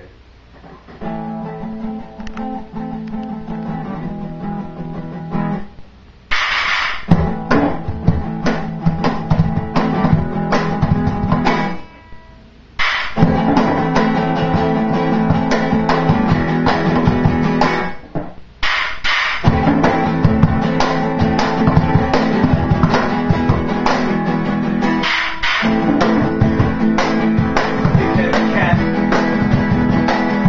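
Acoustic guitar playing chords alone for the first few seconds, then joined by a cajón box drum slapped in a steady rhythm. The two break off together briefly a couple of times.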